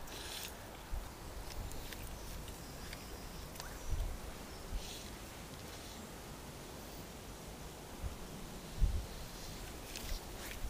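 Quiet outdoor background with faint rustling and a few soft low thumps, the loudest near the end.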